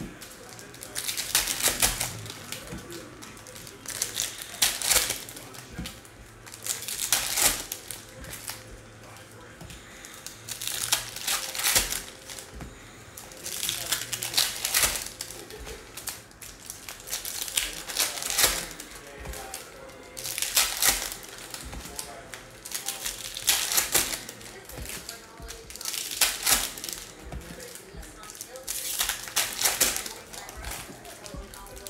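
Foil wrappers of Bowman Draft baseball-card packs crinkling as they are torn open, with cards flicked through by hand: clusters of crackling clicks every two to three seconds, about ten in all.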